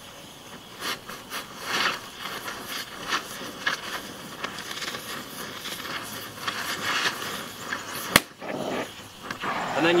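Oxy-acetylene torch flame hissing on a leaf spring bushing's steel center pin, with irregular crackling as the rubber bushing inside heats and burns. One sharp snap a little past eight seconds in.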